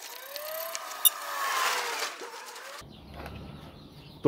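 Sped-up rustle of hands kneading dry powdered bait in a plastic bowl, with short gliding squeaks and a single click over it. It breaks off suddenly about three seconds in, leaving quiet room sound.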